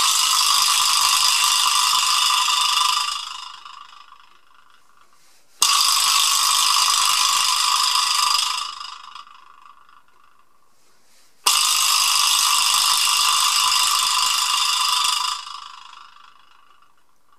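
Pearl vibraslap with aluminium side plates, its ball struck three times about six seconds apart; each strike sets off a buzzing rattle that holds for about three seconds and then fades.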